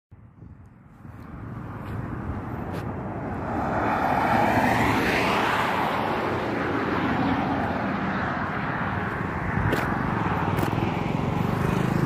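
Highway traffic passing close by: the tyre and engine noise builds over the first few seconds as a vehicle approaches and goes past about four to five seconds in, its pitch falling as it passes, then settles into steady road noise.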